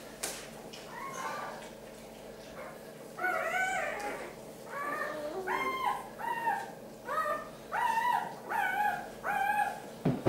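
A newborn puppy crying: a run of about eight short, high-pitched cries, roughly one a second, starting about three seconds in.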